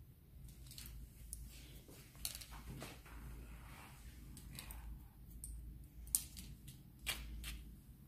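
Hairdressing scissors snipping into the ends of a held section of hair, point-cutting: a dozen or so short, irregular snips, fairly quiet.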